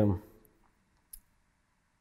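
A man's voice trails off at the start, then a pause of near silence broken by one short, faint click about a second in.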